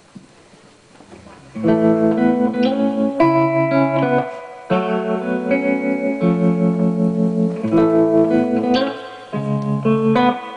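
Electric guitar playing a song's intro, coming in about a second and a half in with held chords that ring out and change every second or so.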